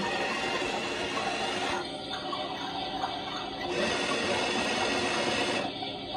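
Toy washing machine switched on with a button press and running: a steady whirring wash cycle with a swishing sound. It starts suddenly and changes character about every two seconds.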